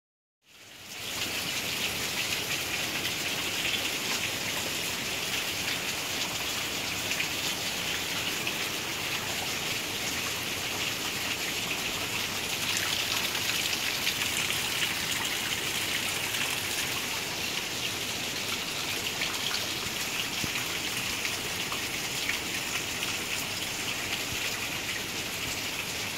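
Heavy rain pouring steadily on pavement and grass: an even, unbroken hiss.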